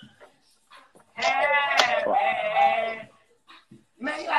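A person's voice letting out one long, high-pitched, wavering cry without words, starting about a second in and lasting about two seconds.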